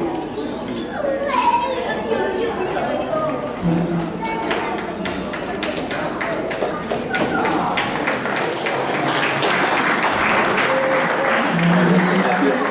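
Indistinct chatter of several people talking in a large, echoing hall, with scattered knocks and taps. The talk grows a little louder near the end.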